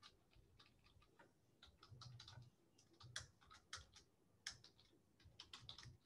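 Faint typing on a computer keyboard: irregular runs of key clicks, some close together and some spaced apart.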